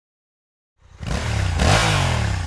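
A motorcycle engine revving. It starts about a second in out of silence and swells to its loudest near the end.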